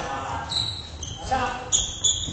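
Badminton play echoing in a large gymnasium: high squeaks of shoes on the wooden floor, and a couple of sharp racket-on-shuttlecock hits near the end, with voices.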